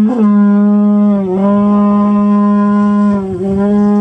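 A replica carnyx, the Celtic bronze war horn with a boar-head bell, blown loudly on one long, steady low note. The note dips briefly and comes back three times: just after the start, a little over a second in, and about three seconds in.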